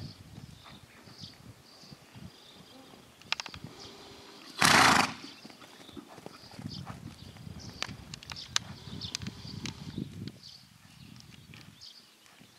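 A stallion's hooves thudding on sand as it moves in a circle on a lunge line, with a few sharp clicks. About five seconds in comes one loud, rough half-second burst of noise.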